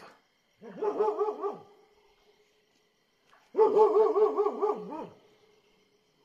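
A dog barking in two drawn-out, wavering bouts of about a second each, one near the start and one midway. The subdued, frightened barking is typical of dogs sensing a big cat nearby. A faint, steady chirring of insects runs underneath.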